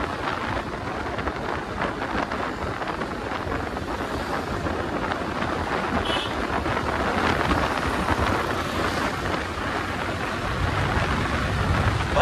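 Wind rushing and buffeting over the microphone, with road and engine noise of a Suzuki Access 125 scooter riding at about 65–70 km/h on the last of its one litre of petrol.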